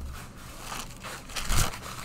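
A sheet of cheap brown paper towel being handled and folded close to the microphone, rustling and crinkling, with a louder crinkle and a soft thump about one and a half seconds in.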